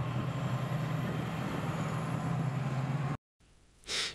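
T-72 tanks' V-12 diesel engines running as the tanks drive, a steady low drone under a noisy rush. It cuts off suddenly about three seconds in.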